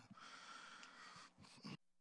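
Near silence: a faint hiss of background noise with a couple of soft clicks, cutting off to dead silence near the end.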